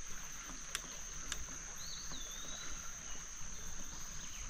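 A steady, high-pitched insect drone over the low rumble of a bicycle rolling along a dirt trail. Two sharp clicks come about a second in, and a short whistled bird call comes around the middle.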